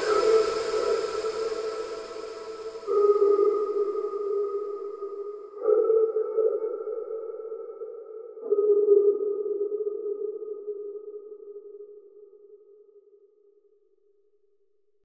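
End of an electronic music track: a sustained, ringing electronic chord with no beat, struck afresh three times and dying away after each strike, then fading out to silence.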